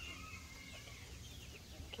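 A brood of chicks peeping faintly, a scatter of short, high peeps that mostly fall in pitch.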